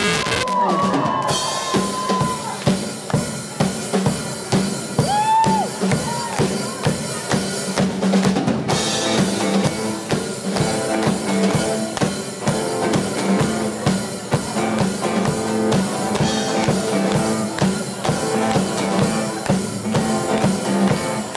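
Live rock band playing an instrumental passage of a song through amplifiers: a steady, driving drum-kit beat with bass guitar and acoustic guitar, no singing.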